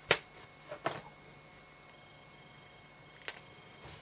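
Scissors snipping a clump of olive-dyed fox fur from the skin: a sharp snip right at the start, another just under a second in, and a lighter click a little past three seconds.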